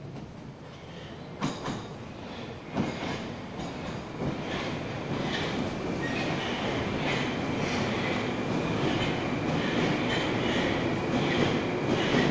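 Moscow Metro train pulling into an open-air station, growing steadily louder as it nears, with a few sharp clacks of the wheels over rail joints early on. As it runs alongside the platform, a high-pitched whine sits over the rumble of the wheels.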